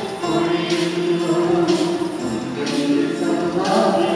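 A choir singing a hymn, with a tambourine shaken about once a second on the beat.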